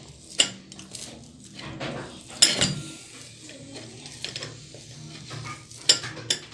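Wire potato masher working boiled potatoes in a stainless steel bowl, with scattered clinks of metal on metal as it strikes the bowl; the loudest clink comes about two and a half seconds in.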